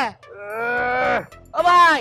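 A man calling out "Bhai!" (brother) in a long, drawn-out wail that falls in pitch, then calling again near the end.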